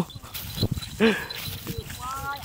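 A dog barks once, about a second in.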